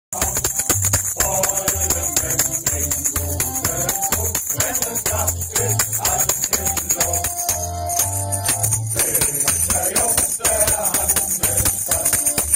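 A men's shanty choir singing a sea shanty in chorus, backed by an instrumental band with a pulsing bass line and a fast, steady high-pitched percussion beat.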